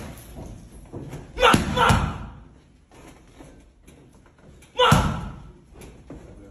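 Boxing gloves smacking into a trainer's padded mitts: two hard hits in quick succession about a second and a half in, and a third about five seconds in.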